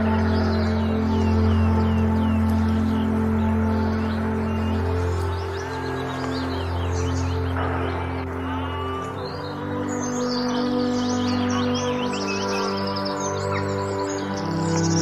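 Slow ambient music of long held chords, the harmony shifting about nine seconds in, with birds chirping over it.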